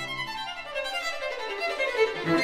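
String quartet playing, the violins carrying the line; in the second half the low cello part falls silent, leaving only the upper strings.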